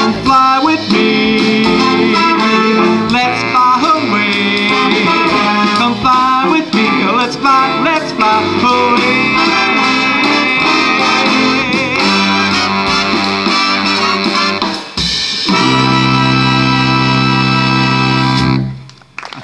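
A jazz big band of saxophones, trumpets and trombones with drums playing the closing bars of a swing tune. It ends on one long held chord of about three seconds that cuts off right at the end.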